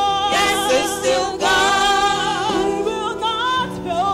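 Gospel singing with a strong vibrato over held accompaniment chords, the melody rising and falling continuously.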